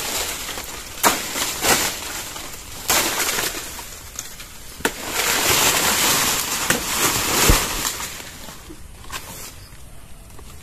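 Dry banana leaves and stalk rustling and crackling as a banana bunch is pulled down and cut from the plant, with a few sharp snaps or knocks along the way.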